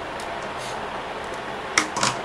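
Cutters snipping off the excess tail of a nylon cable tie: one sharp click near the end, over a steady background hiss.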